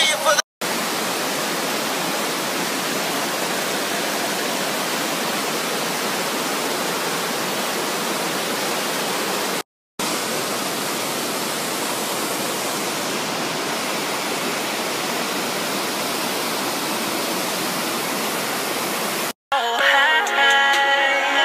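Cascading waterfall: a steady, even rush of white water over rocks, broken by a short silent cut about halfway through.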